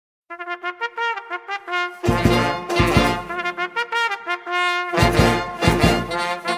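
Brass-led intro music: quick short notes at first, then a heavy bass and drum beat comes in about two seconds in and returns louder near the end.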